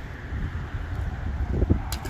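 Wind buffeting the microphone with a steady low rumble. Near the end comes a short, sharp splash as a small smallmouth bass is released and hits the lake surface.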